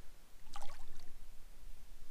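A small, brief splash of lake water about half a second in, as a released spotted bass slips from a hand at the boat's side and swims off.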